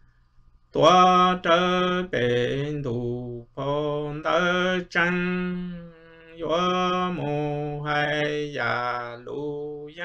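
A man singing kwv txhiaj, Hmong sung poetry, solo and unaccompanied, in long held phrases that slide and waver in pitch with short breath pauses between them. The voice starts a little under a second in.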